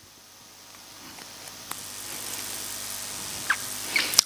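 Hiss of room noise that grows gradually louder, with a few faint ticks.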